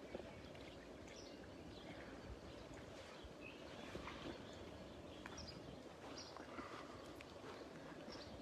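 Quiet outdoor ambience: a steady low background with a few short, faint, high chirps from birds scattered through it.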